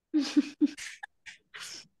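A person laughing over a video call: three quick voiced 'ha' pulses, then a few breathy, hissing bursts of laughter.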